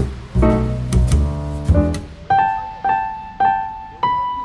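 Background piano music: full struck chords in the first half, then a single high note played three times, about half a second apart.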